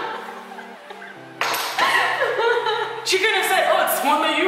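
Two women laughing and chattering over soft background music, with one sharp knock about a second and a half in.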